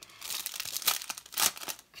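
Clear plastic wrapping around a pack of pizza-box sheets crinkling as it is handled, in irregular crackles with two louder ones near the middle.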